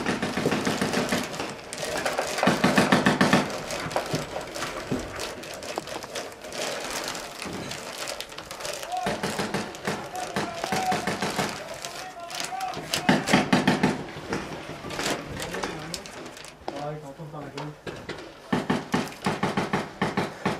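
Paintball players' voices, muffled and partly shouted, with sharp pops of paintball markers firing, some in fast strings.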